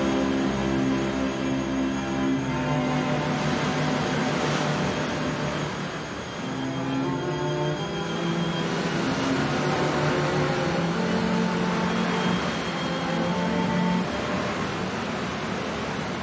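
Sea surf churning and washing over rocks, a steady rush, with slow bowed-string music in long held chords over it.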